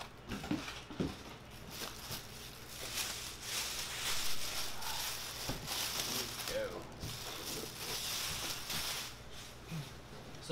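Plastic bag crinkling and rustling as a rack-mount amplifier is slid out of its bag and foam packing, with a few soft knocks of foam and chassis against the bench.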